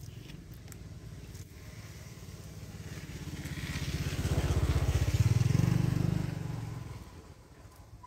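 A motorbike passes by off screen. Its engine grows louder from about two seconds in, is loudest around five to six seconds, then fades away by about seven seconds.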